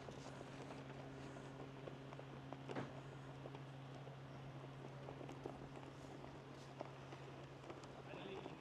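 Faint, steady low drone of a distant propeller plane's engine, with a few small knocks over the outdoor background.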